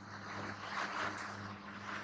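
Marker pen writing on a whiteboard, a run of soft scratchy strokes, over a steady low hum.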